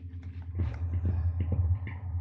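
Feedback drone from a loop of effects pedals (pitch shifter, pitch bender, slow tremolo, bass distortion) run through a headset into a mixer: a low steady hum with irregular clicks and crackles, jumping louder about half a second in.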